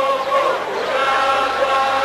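A large group of voices singing together without instruments, a slow traditional Greek kagkelaris dance song, moving through a phrase and then holding one long note from about halfway through.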